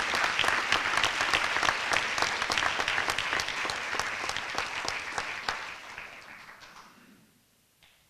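Audience applauding. The clapping thins out and dies away about seven seconds in, and a single click follows near the end.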